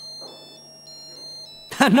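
Mobile phone ringing with an incoming call: a high, beeping ringtone melody of short notes stepping up and down. It stops about a second and a half in, just as a man answers.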